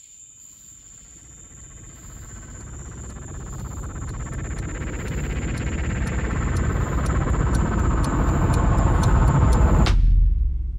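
Crickets chirping steadily at night, overlaid by a rising swell, a transition sound effect that builds louder over several seconds and cuts off suddenly just before the end.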